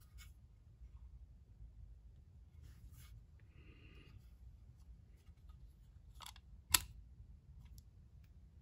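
Light metal clicks as a vintage Ronson PAL cigarette case-lighter is handled, with a short scrape in the middle. About two-thirds of the way through comes one sharp metallic snap as its top is thumbed down to strike and light the petrol lighter.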